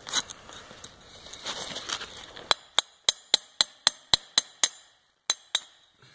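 Steel chisel struck with a hammer, chipping white mold material off a freshly cast aluminium part. Some scraping at first, then a run of nine sharp metallic taps about four a second, a short pause, and two more taps near the end.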